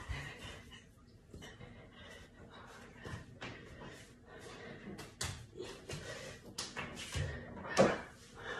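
Scuffs and light slaps of bare hands and feet on a concrete wall as a person climbs and braces against it, with a louder thump near the end.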